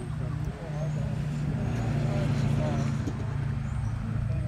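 An engine running steadily with a low hum that grows a little louder in the middle, under faint background voices.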